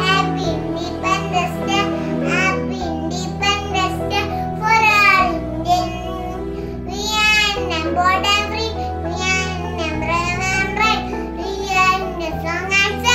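A young child singing a song over backing music, whose low notes hold steady and change about every two and a half seconds.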